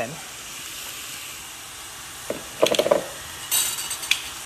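Chicken breast and freshly added sliced peppers and onions frying in a pan, with a steady sizzle. A short louder noise comes about two and a half seconds in, and the sizzle flares up briefly near the end.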